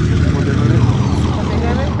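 Outdoor street noise: a steady low hum with people's voices over it.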